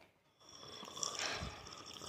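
A long audible breath by a woman, starting about half a second in and lasting about a second and a half, between sentences.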